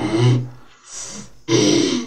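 Human vocal sounds: a brief voiced sound, a short breathy hiss about a second in, then a loud, rough vocal exclamation in the last half second.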